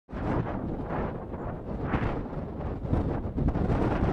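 Wind buffeting the microphone outdoors, a gusting, rumbling noise that swells and dips unevenly.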